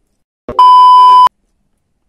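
A single loud, steady electronic bleep at about 1 kHz, lasting under a second, of the kind edited in to censor a word.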